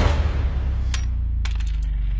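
Bullets dropping onto a hard floor with two bright metallic clinks, about one and one and a half seconds in. They follow the fading tail of a gunshot, with a steady low rumble underneath.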